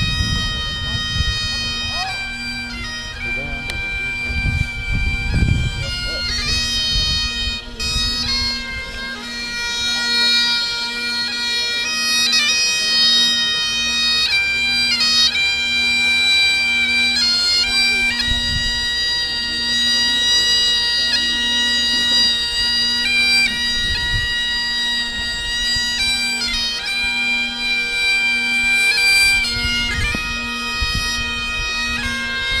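Bagpipes playing a tune over their steady drones.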